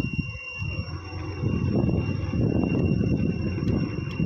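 Wind buffeting the microphone: a low, gusting rumble that drops away briefly about half a second in, then comes back.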